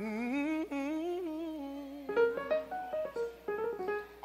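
A man singing long, drawn-out notes with a wavering vibrato into a microphone, a gospel-style melismatic run, over soft instrumental accompaniment.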